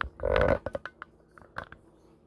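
Handling noise from hands on things at the counter: a brief louder scrape near the start, then scattered light clicks and taps.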